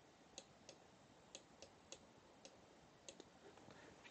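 Faint, irregular clicks, about nine short sharp ones over four seconds, from computer input while letters are hand-drawn on screen in a drawing program, against near-silent room tone.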